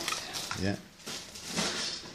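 Faint rustling scrapes and light ticks from hands working thread around a fishing rod blank, with a brief spoken "yeah" about half a second in.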